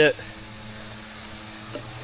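A pause in speech filled by a faint, steady background hum with a low drone in it, with no sudden sounds.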